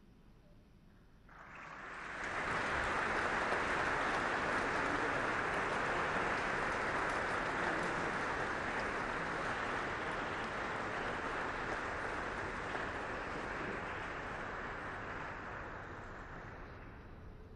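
Audience applauding: the clapping starts about a second in, swells within a second, then holds and eases off slowly toward the end.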